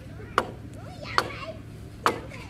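A blade chopping into a wooden log as it is hewn by hand: two sharp blows, a little under a second apart.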